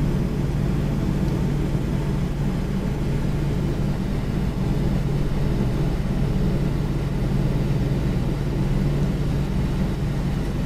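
Steady low mechanical hum that stays at one level throughout, with no breaks or changes.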